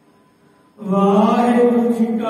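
A man chanting in long held notes, starting just under a second in after a brief, nearly quiet pause.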